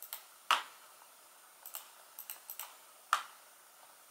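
Laptop trackpad clicks: several faint paired clicks and two sharper, louder ones, about half a second in and again just after three seconds, as answers are picked in a timed quiz.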